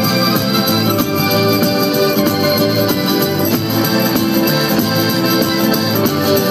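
Live southern Italian folk band playing dance music: frame drums and bass guitar keeping a steady beat under a sustained melody line, loud and continuous.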